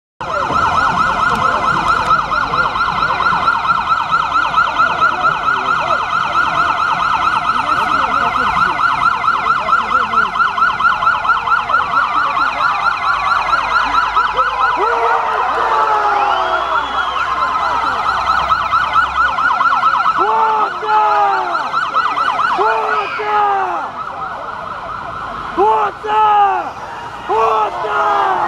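Police vehicle sirens in a fast, continuous warbling yelp, several overlapping as the convoy leaves. From about twenty seconds in they give way to short rising-and-falling siren whoops, repeated in quick groups.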